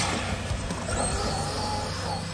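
Losi DBXL-E 2.0 1/5-scale electric buggy driving off at speed, its brushless motor whining and changing pitch as the throttle varies.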